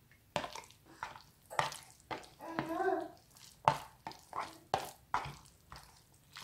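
Metal fork stirring and scraping through saucy microwaved noodles in a cardboard takeaway box: a run of short, irregular wet clicks and scrapes, with a brief pitched sound about halfway through.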